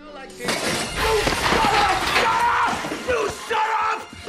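Film soundtrack: a man's enraged yell over a loud crash of breaking glass, starting about half a second in, with dramatic music underneath.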